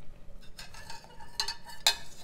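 A metal ladle clinking against a stainless steel pot a few times while hot stock is ladled into risotto. The loudest knock comes near the end.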